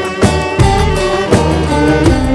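Instrumental music with a steady beat and held melody notes.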